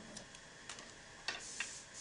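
A few faint, sharp clicks at irregular intervals, the loudest about 1.3 s in, over a low background hiss.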